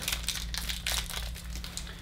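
Plastic-foil hockey card pack wrapper crinkling in the hands as it is opened, a rapid, irregular crackle, over a steady low hum.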